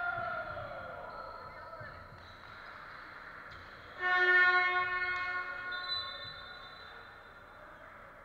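Basketball arena buzzer sounding once about four seconds in: a loud, harsh horn tone that holds for about a second and then fades out. Around the start a voice calls out, falling in pitch.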